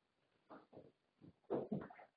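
Irregular faint knocks, clatter and rustling from a person handling equipment and moving about, growing into a louder cluster of knocks about one and a half seconds in.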